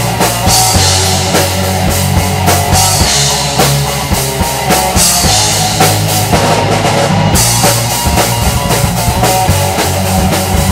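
Loud rock song played by a band, with the drum kit to the fore: bass drum and snare keeping the beat under the other instruments.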